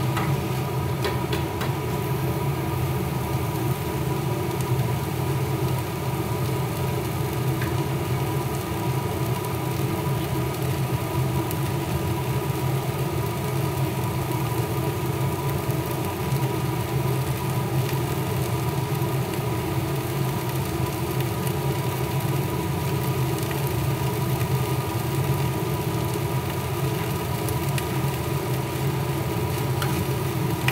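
Steady hum of a motor-driven fan, such as a kitchen extractor, running unchanged, with a low drone and a thin constant whine above it.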